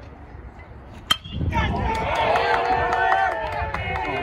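A metal baseball bat strikes a pitched ball with a sharp crack about a second in. A crowd of spectators breaks into loud cheering and shouting right after the hit.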